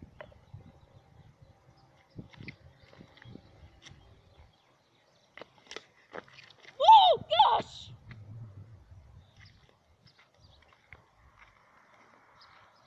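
Light knocks as a plastic bottle is set down on asphalt, then footsteps in sandals walking away. About seven seconds in come two short, loud cries that rise and fall in pitch.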